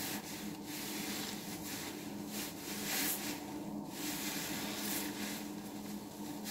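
A soap-soaked foam sponge squeezed and kneaded in the hands over a tub of soapy water, giving a wet squishing and fizzing of suds that comes in repeated squeezes.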